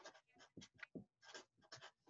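Marker pen writing on paper: a run of short, faint strokes as letters are written.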